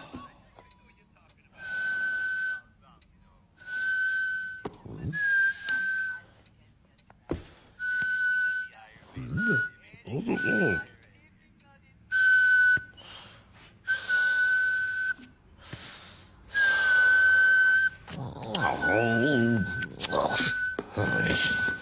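A whistle sounded in about eleven short, steady blasts at one high pitch, each half a second to a second and a half long, with brief gaps. Short wordless vocal grunts fall between some of the blasts.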